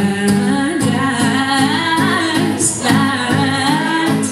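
A woman singing a pop melody into a microphone, amplified through a PA, with acoustic guitar accompaniment.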